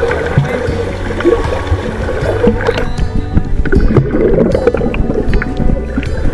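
Background music over water sloshing around a camera at the water's surface.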